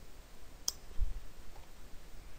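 A single sharp click of computer input about two-thirds of a second in, choosing an autocomplete suggestion in a code editor, followed by a faint low thump.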